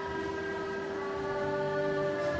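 Church hymn music holding a long, steady chord. A new note enters about two-thirds of the way through.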